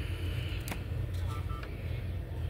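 A steady low hum or rumble, with one sharp click about two-thirds of a second in and a few faint ticks just after.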